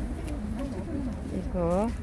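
Background chatter of several people talking at a market stall. Near the end comes a short, louder pitched call whose pitch dips and then rises.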